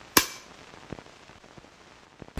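One sharp clack of a film clapperboard's clapstick snapping shut.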